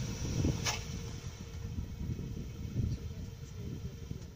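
Low rumble of a car's engine and tyres as the car drives forward off a pair of test rollers, with one sharp click under a second in. The sound slowly fades.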